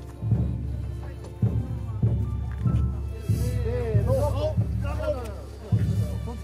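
A deep drum struck slowly, about once a second, each beat ringing on low down. Voices rise over it in the middle.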